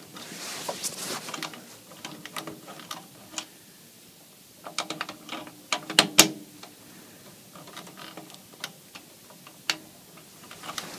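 Irregular plastic clicks and scrapes of a part being pushed and wiggled against its socket in a fire alarm control panel. The part will not seat. A cluster of louder clicks comes about five to six seconds in, and one more near the end.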